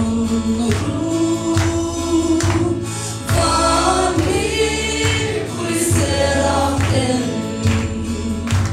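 Several voices singing a gospel worship song together over a live band, with a steady drum beat about once a second and held bass notes.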